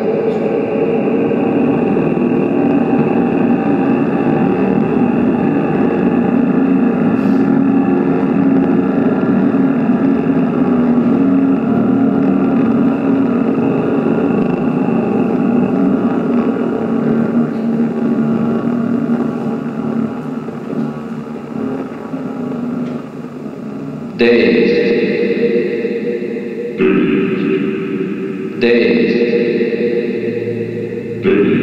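Electronic computer music played over loudspeakers: a dense, sustained, echoing texture of many layered pitches that slowly fades, then three sudden loud chord-like attacks in the last six seconds, each dying away.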